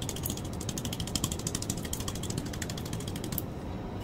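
A rapid, even run of small mechanical clicks, about ten a second, like a ratchet being turned; it stops a little over three seconds in.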